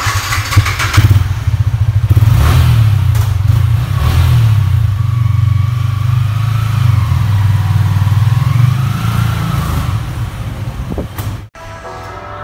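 Yamaha R15 V3 motorcycle's single-cylinder engine blipped a few times, then running steadily as the bike pulls slowly away. The sound cuts off suddenly near the end.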